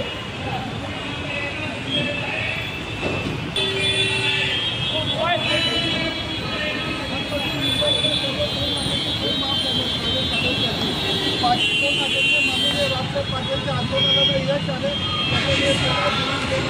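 Several people talking over steady road traffic noise, with cars running close by.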